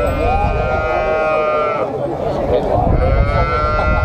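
Cattle bawling: two long, steady calls, the second starting about three seconds in, over the chatter of a crowd.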